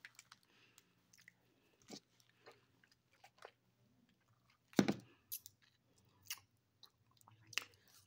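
Faint chewing and biting on a frozen, jello-coated grape, with scattered small crunching clicks.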